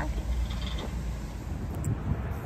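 Low, steady hum of a car heard from inside the cabin, fading out near the end into outdoor wind noise on the microphone.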